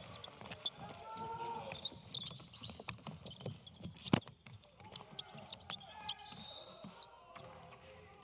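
Court sound of a basketball game with no live crowd: the ball bouncing on the hardwood floor, sneakers squeaking and players calling out. The loudest sound is a single sharp knock about four seconds in.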